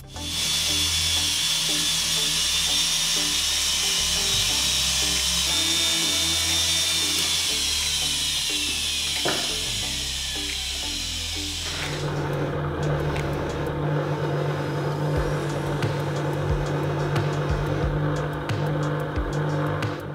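A jeweller's handheld rotary tool running with a high whine that falls in pitch as it winds down a little before halfway; then a bench polishing motor with a buffing wheel runs with a low steady hum, polishing the gold piece. Background music plays underneath.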